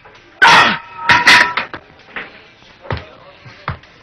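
Two loud yelps, the first starting suddenly about half a second in and the second about a second in. Two short, sharp knocks follow near the end.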